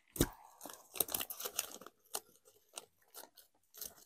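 A hand rummaging in a Doritos chip bag, the plastic bag crinkling and the chips rustling in quick, sharp crackles. The crackles are dense for about two seconds, then come more sparsely.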